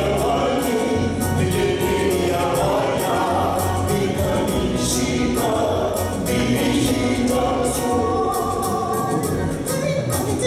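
A mixed gospel vocal group of men and women singing in harmony into microphones, over a sustained bass line and a steady beat.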